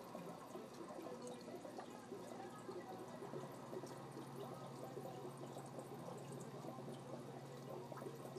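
Faint bubbling and trickling of water in a home aquarium, many small drips and pops over a steady low hum.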